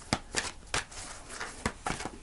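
A deck of oracle cards being shuffled by hand: several short, irregular clicks of the cards striking each other.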